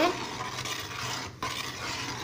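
A metal spoon stirring liquid in a steel pot, scraping and swishing against the pot, with a brief break about one and a half seconds in.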